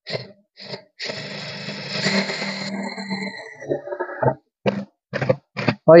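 Impact driver fitted with a DeWalt Impact Clutch adapter driving a self-drilling screw through galvanized sheet steel into steel tubing, with the adapter's clutch engaged, running for about three seconds and then stopping. A few short clicks come before and after the run.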